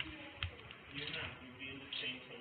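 A sharp click about half a second in, then faint rustling, under faint low voices.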